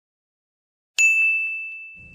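A single bright chime-like ding about a second in, one clear high tone that rings on and slowly fades.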